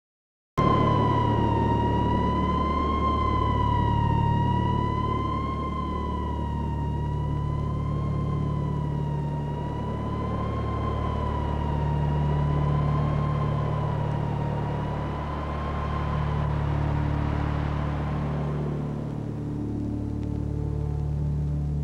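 A siren-like tone held around one pitch, wavering slowly up and down about every two and a half seconds, over a steady low rumble. It starts abruptly about half a second in, and the tone fades under a rising hiss near the end.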